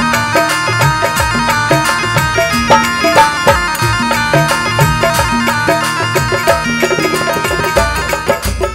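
Instrumental interlude of a Rajasthani devotional bhajan: a steady, fast drum rhythm under a sustained melody line, with no singing.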